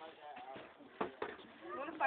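Faint background voices talking, with one sharp click about a second in.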